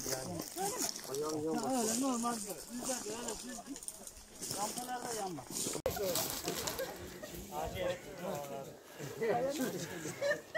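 Indistinct voices of a group of people talking and calling out to each other, in short phrases with pauses.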